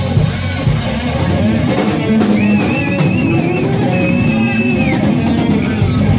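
Live rock band playing, with drum kit, bass guitar and guitars. A high held lead note wavers in pitch a couple of seconds in, then holds steady for about a second and bends down.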